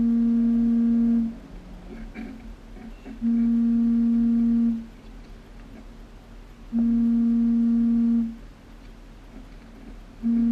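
A low, steady, buzzing tone sounding three times, each about a second and a half long, repeating about every three and a half seconds.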